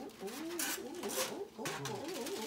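Aluminium foil crinkling in short rustles as it is peeled back off a roasting tray. Under the rustling, a voice coos along in a wavering, up-and-down pitch.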